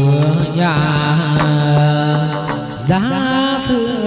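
Hát văn (chầu văn) ritual music: a voice holds a long low note, then slides up to a higher note about three seconds in, over instrumental accompaniment with a few sharp percussion strikes.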